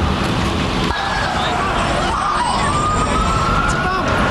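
Emergency vehicle siren wailing, its pitch sweeping and then slowly rising, over a steady wash of street noise.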